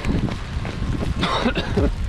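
A man coughing while running, with a rough burst about a second and a quarter in and a shorter one near the end, over a continuous low rumble from running with a handheld camera.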